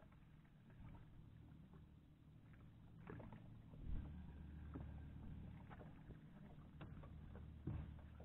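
Faint ambience on board a small aluminium fishing boat: a steady low rumble with scattered light knocks, a dull bump about four seconds in and another just before the end.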